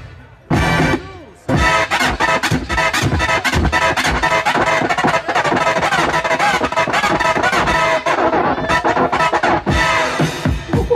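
Hip-hop DJ scratching and cutting vinyl records on turntables through the mixer and PA. It starts stop-start, with short stabs and gaps, then from about a second and a half in runs as a dense, continuous stream of fast cuts.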